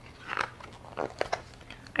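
Pages of a hardcover picture book being turned by hand: a few soft paper rustles and small clicks.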